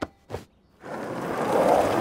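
Cartoon sound effect of small ride-on toy cars setting off: after a click and a moment of quiet, a soft noisy hiss builds up steadily over the second half.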